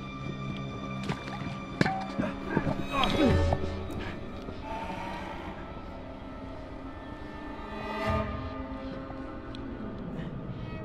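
Dark, eerie film score of sustained droning tones. Between about two and three and a half seconds in, there are sharp clicks and a swooping tone that falls steeply in pitch, and a smaller swell follows near the end.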